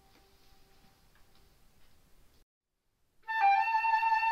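Solo transverse flute: a held note fades out faintly, a brief silence follows, and about three seconds in a new phrase begins with a loud held note.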